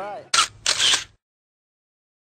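A camera shutter clicking twice as a photo is taken, a short click and then a longer one, after the tail of a voice; the sound then cuts to dead silence.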